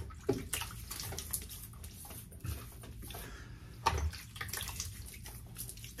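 Water splashed onto a face with the hands at a sink, wetting the beard for a shave: irregular small splashes and drips.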